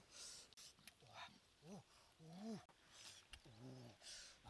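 Quiet, short wordless vocal sounds: three low hums or whimpers that rise and fall, between brief breathy puffs.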